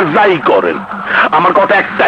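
A man's voice, loud speech or crying out.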